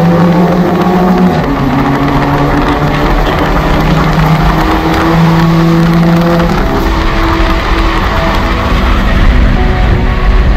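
Mk5 VW Golf GTI's turbocharged 2.0-litre four-cylinder, fitted with new downpipes, running at road speed with its exhaust note rising and falling.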